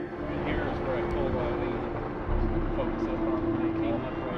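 Wind rumbling on the microphone in gusts, about two seconds in it grows louder, under a steady held tone from background music.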